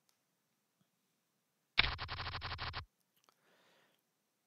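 A short sound effect from the PokerStars poker software, a rapid, even patter lasting about a second, starting nearly two seconds in.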